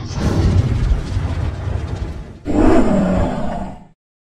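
Sound-effect logo sting: a low rumbling rush, then a sudden louder crash about two and a half seconds in that fades out just before the end.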